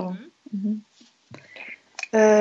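Quiet speech only: a spoken word trailing off, a short murmur, then whispering for about half a second near the middle.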